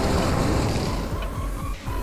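Film trailer soundtrack: music under a heavy rushing surge of water, strongest at the start and easing off, with a brief drop near the end.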